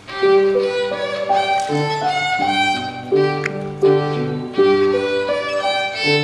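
A child playing a violin solo, bowing a melody of separate notes that step up and down in pitch.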